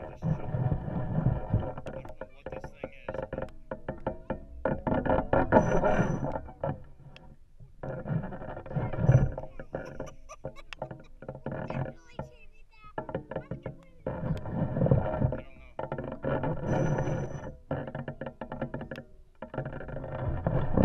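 Music with a singing voice.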